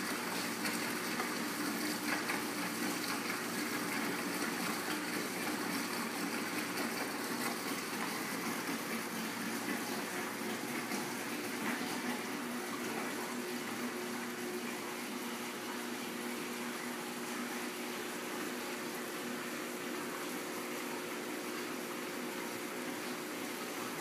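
Water flowing and splashing steadily down into a reef aquarium sump as the new-saltwater pump fills it, with a steady pump hum underneath; a noisy process.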